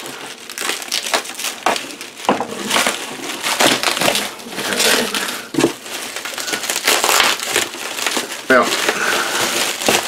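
Bubble wrap crinkling and crackling in irregular bursts as it is pulled open and peeled off a metal-cased instrument by hand.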